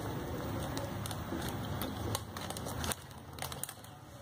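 Handling noise from a purse's plastic-wrapped shoulder strap and metal buckle being worked by hand: rustling and crinkling, with a few light clicks in the second half.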